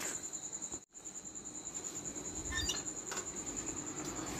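Crickets chirping in a steady, fast-pulsing high trill, with a brief total dropout about a second in.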